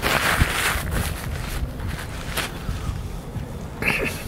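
Paper napkin rustling close to a clip-on microphone as a mouth is wiped, loudest in the first second, over a low rumble of wind on the microphone. A brief high-pitched sound comes near the end.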